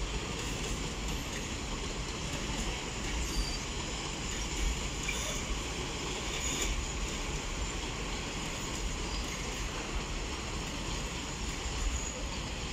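A train of open coal wagons rolling past on station tracks: steady running noise of steel wheels on the rails.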